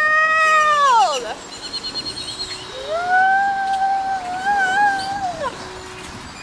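A woman's voice holding two long high sung notes. The first slides down and stops about a second in; the second comes in about three seconds in, wavers a little, and drops away about two seconds later.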